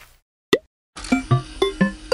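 A single short cartoon "plop" sound effect about half a second in, then after a brief silence a bouncy children's jingle of quick, short plucked notes, about five a second, starts about a second in.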